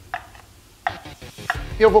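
Mayonnaise being scraped out of a clear food-processor bowl into a ceramic ramekin with a utensil: about three short scrapes and knocks with quiet between.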